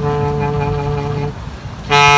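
Solo clarinet holding a low note in a slow jazz tune; the note fades out about a second and a half in, and after a short gap the next phrase starts near the end.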